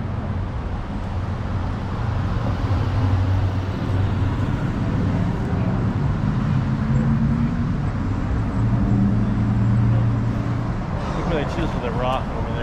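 Street traffic: a steady low hum of car engines, louder in the second half as a vehicle runs close by. Voices come in briefly near the end.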